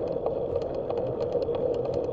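Bicycle rolling along an asphalt street: a steady hum of tyre and wind noise, with a rapid, irregular light ticking throughout.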